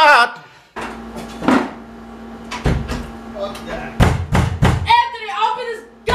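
Several heavy knocks and thuds, as of a hand banging on a wooden door, then a voice shouting near the end.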